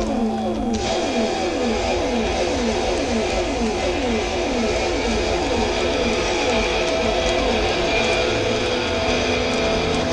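Live hard-rock band playing, recorded from the audience: an electric guitar repeats a falling sliding figure about twice a second over bass and drums.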